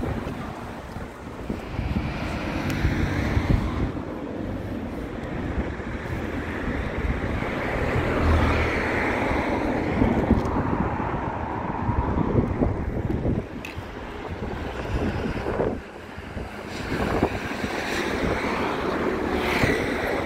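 Wind buffeting the microphone in irregular gusts, over the hiss of cars passing on the road, which swells in the middle.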